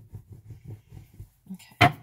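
Small rolling pin rolled over fondant in a silicone mold: a quick run of soft, low thumps about six a second, then a sharper knock near the end.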